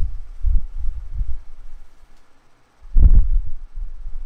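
Low, irregular thumps and rumbling of handling noise, with a louder knock and rumble about three seconds in.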